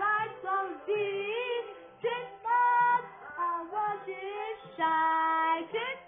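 Pop song with several female voices singing, played through a television's speakers, with a long held note about five seconds in.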